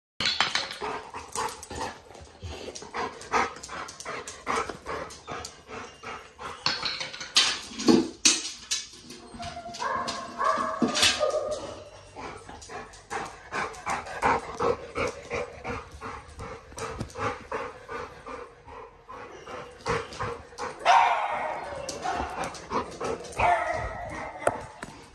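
A dog barking and whimpering, with rapid clicking throughout; the clearest cries come about ten seconds in and again, louder, about twenty-one seconds in.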